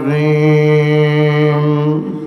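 A man's voice chanting in a melodic Islamic recitation, holding one long, steady note that breaks off at the end, amplified through a stage microphone.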